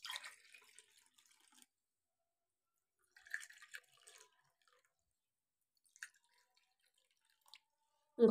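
Water poured from a steel bowl into small steel tumblers: two short, faint pours of about a second each, the second starting about three seconds in. A couple of faint ticks follow later.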